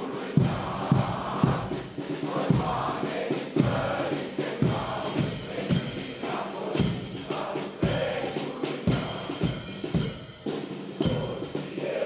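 Marching band playing a march, with the bass drum and cymbals striking on the beat about twice a second.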